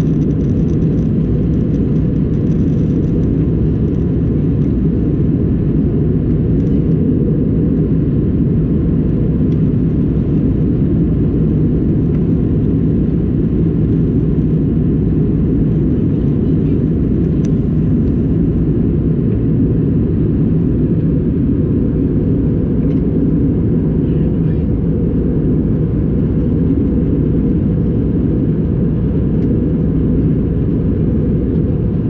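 Steady cabin drone inside an Airbus A320 in its climb: engine and airflow noise heard as a deep, even rumble with a faint steady hum.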